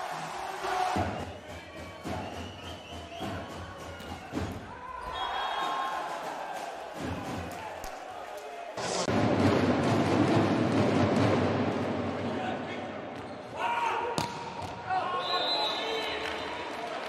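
Volleyball match in an arena: the ball struck several times over crowd noise, then a loud crowd cheer for about four seconds, starting about nine seconds in.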